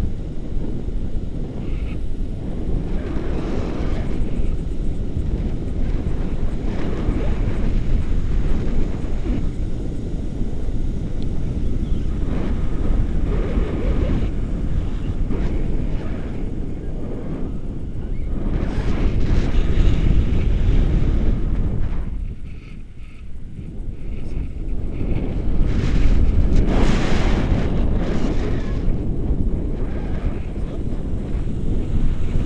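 Rushing airflow buffeting the camera microphone during a tandem paraglider flight, swelling and fading in gusts, with a brief lull about two thirds of the way through.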